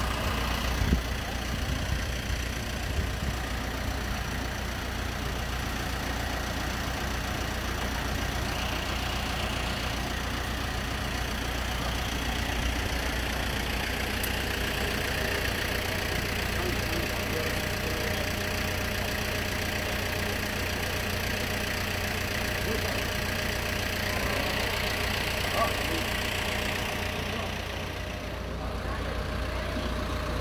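An engine idling steadily, with a few short knocks early on and once near the end.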